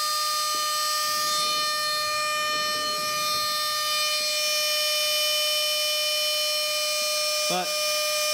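Small high-speed spindle motor on a home-built delta CNC, running with a steady high-pitched whine as a 1 mm burr cutter mills the outline of a copper-clad circuit board.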